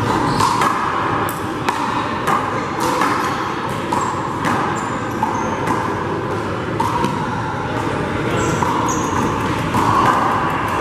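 A small Big Blue rubber handball smacking against the wall and bouncing off the court floor in a rally: sharp, echoing hits about two a second for the first six seconds, then only a few.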